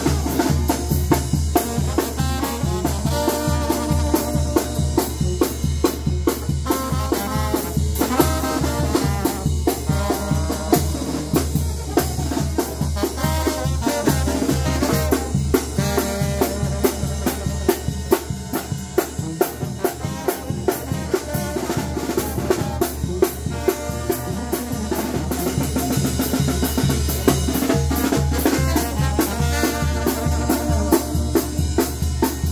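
A live Mexican brass banda (banda de viento) playing: clarinets, trumpets, trombone and sousaphone over snare drum, bass drum and cymbal, with a steady beat throughout.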